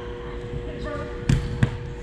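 Two sharp thuds of an indoor soccer ball being struck, about a third of a second apart, echoing in a large hall: a shot and the goalkeeper's diving block.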